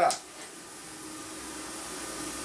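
Steady hiss with a faint hum from a powered-up Hynade PLC-50DP pilot-arc plasma cutter, its arc not yet struck, growing slightly louder near the end.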